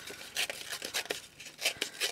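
Patterned craft paper being torn by hand around its edges: a quick, uneven series of short rips.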